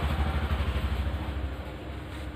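A vehicle engine's low, rapidly pulsing rumble, growing quieter near the end.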